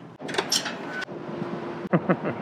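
A door being pushed open with a short rush of noise, followed by a steady mechanical hum with one held tone, cut off by a sharp click near the end.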